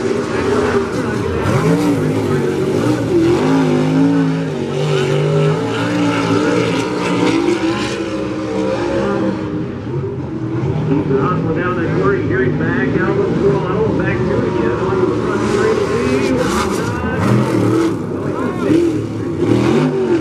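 Several race car engines running at once, their pitches rising and falling as they rev.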